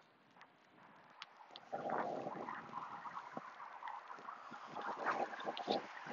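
Wind buffeting the microphone, starting about two seconds in after near silence, with scattered scuffs of sneakers on the rubber runway as the thrower steps through a crossover.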